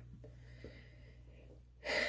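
Faint, steady low hum of room tone, then a man's quick breath in near the end.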